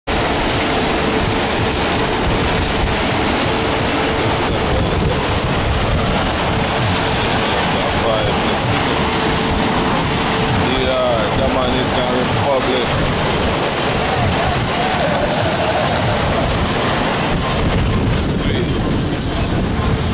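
Loud, steady rush of wind and churning water aboard a sailing catamaran under way, with music and voices mixed into it.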